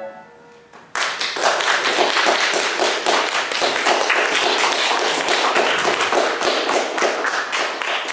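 The last note of a violin and piano piece fades out. About a second in, a group breaks into steady applause.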